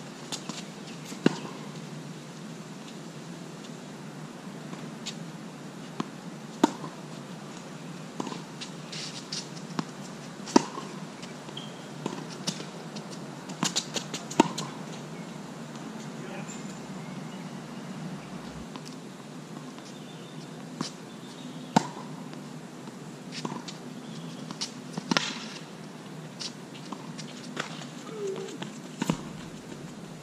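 Tennis rally on a hard court: sharp pops of racket strings striking the ball and the ball bouncing, coming irregularly every second or two, with a louder hit from the near player about fourteen seconds in.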